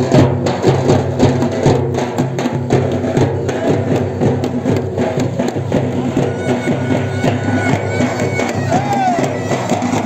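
Festival procession music: a drum struck in a quick steady beat, about three strokes a second, over a steady low drone. The beat grows fainter in the second half.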